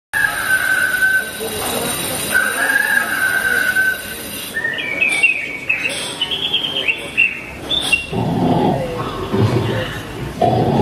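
Cartoon-style bird tweeting sound effects: two held whistled notes, then a run of quick, warbling chirps. About eight seconds in, a lower, rough, pulsing sound takes over.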